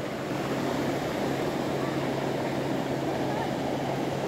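Steady wash of ocean surf breaking on a beach, with a faint steady low hum underneath.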